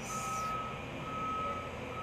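A vehicle reversing alarm beeping at one steady pitch, about once every second and a bit. A short rustle of plastic wrap comes in the first half second.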